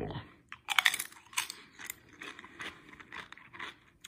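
A person chewing a crunchy unsalted tortilla chip dipped in salsa: a run of irregular crisp crunches, loudest about a second in.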